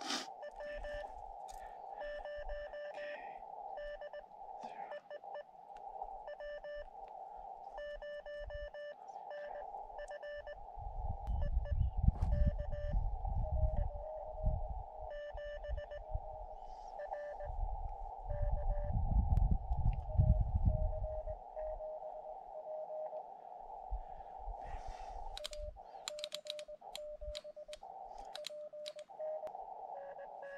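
Morse code (CW) from a portable ham-radio rig: keyed dots and dashes going back and forth as contacts are made, over a steady band of receiver hiss. Twice in the middle a low rumble swells up over the code and is the loudest sound.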